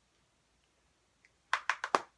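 Quiet at first, then four quick sharp clicks near the end from makeup cases and brushes being handled.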